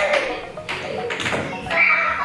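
Background music with children's voices, a high shout near the end, and two sharp knocks in the middle.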